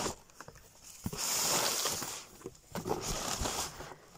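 A cardboard boot box being opened and the thin plastic bag inside rustling and crinkling, in two noisy spells: one from about a second in, and a shorter one near three seconds.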